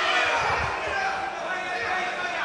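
Boxing ring ambience in a large hall: a few dull thuds of gloved punches and footwork on the canvas about half a second in, over faint background voices.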